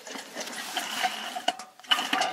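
Metal rollers of a long roller slide rattling as a person rides down over them, a steady clatter with a couple of sharper clicks near the end.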